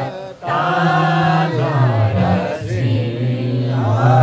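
Men's and women's voices chanting a Newar Buddhist devotional hymn together, led over microphones, with a short breath pause about a third of a second in.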